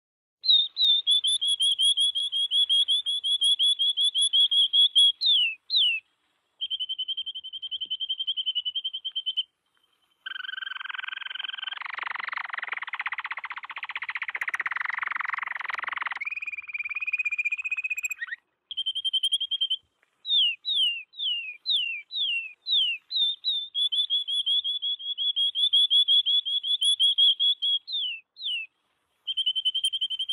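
Recorded canary song: high, fast trills of rapidly repeated notes in phrases with short breaks, some runs of quick downward-sweeping notes. The song is being auto-panned across the stereo field by a panning plugin driven by a sidechain signal. In the middle a hiss-like burst of noise lasting several seconds lies under the song.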